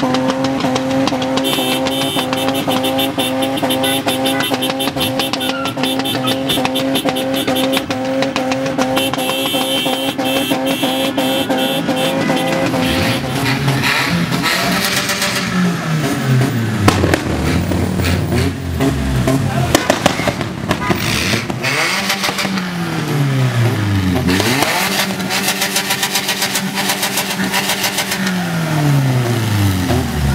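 Car engine held at steady high revs, then from about halfway through, car engines revved up and down over and over in falling and rising sweeps.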